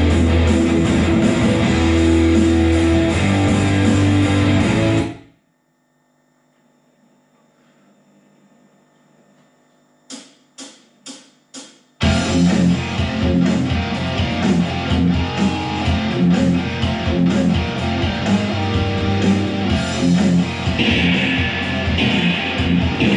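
Electric guitar played loudly over a full backing track through speakers. The music cuts off suddenly about five seconds in and leaves near silence. Four evenly spaced clicks follow, and the music comes back in at full level about twelve seconds in.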